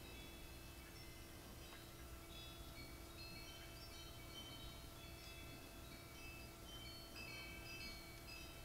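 Near silence: a low steady hum with faint, scattered high chiming tones at varying pitches.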